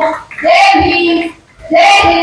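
A woman's raised voice calling out over a microphone in long, drawn-out, chant-like phrases, with two calls in quick succession and short pauses between them.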